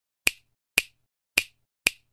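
Four short, sharp snaps, evenly spaced about half a second apart: an intro sound effect.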